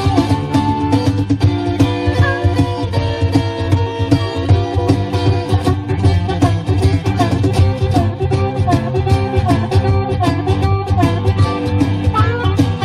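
Live acoustic blues trio playing an instrumental passage: acoustic guitar, harmonica with bent notes, and cajón strikes keeping a steady beat.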